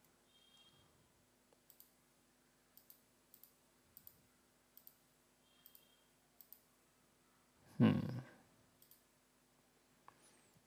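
Faint computer mouse clicks, mostly in quick pairs, coming about once a second as entries are selected, over a low steady hum.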